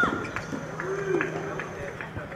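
Brief voice sounds: a short high call at the very start, and a short low vocal sound about a second in, among a few light knocks.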